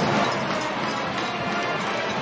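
Marching band brass section playing, with trumpets, trombones and sousaphones, heard in a stadium broadcast mix.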